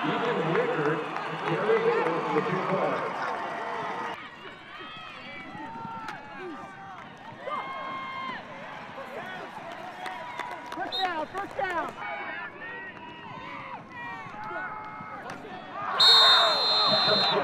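Football game crowd and sideline voices: many people cheering and shouting together, then changing abruptly about four seconds in to thinner, scattered shouts and calls.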